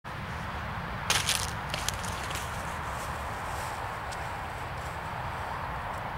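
Footsteps on dry grass and fallen leaves: a few sharp crackling steps about a second in, then fainter ones, over a steady low outdoor rumble.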